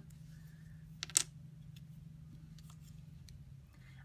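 Clear acrylic stamp block tapping down onto watercolour paper: one sharp click about a second in, then a few faint ticks, over a faint steady low hum.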